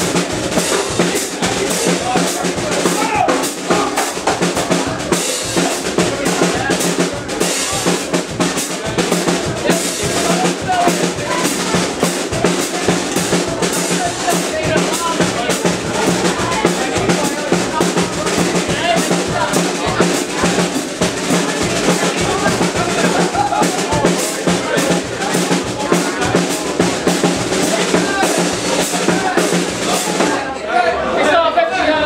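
A dweilorkest (Dutch street brass band) playing live: euphoniums, sousaphone, trumpets, saxophones and trombone over a steady marching beat on snare and bass drum.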